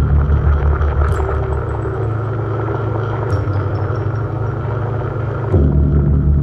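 Live electronic synthesizer music: a dense, low drone with a fast flutter, cut by sharp high clicks about a second in, past the middle and near the end, where the low end swells louder.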